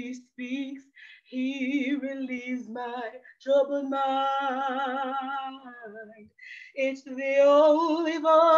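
A woman singing a gospel worship song solo and unaccompanied, with vibrato, holding one long note in the middle between shorter phrases.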